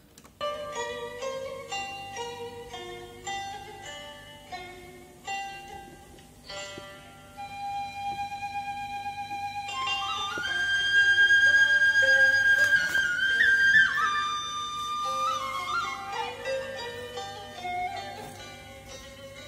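Instrumental music played over loudspeakers through a Nakamichi ZX-7 cassette deck under test: short separate notes at first, then a louder, held melody line from about ten seconds in.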